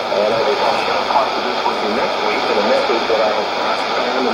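Speech from a shortwave AM broadcast on 9475 kHz, played through a Sony shortwave receiver's loudspeaker. The voice sits under a steady hiss of shortwave noise.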